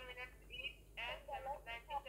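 Speech: a quieter voice than the teacher's, thin and telephone-like, answering the question while a pen writes.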